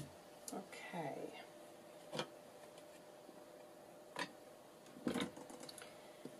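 Faint handling of paper: a hand pressing and smoothing a glued book-page pocket flat, with soft paper rustles and about five light taps and knocks scattered through, a small cluster near the end as a plastic ink pad is picked up.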